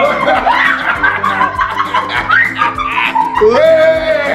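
A man laughing over background music.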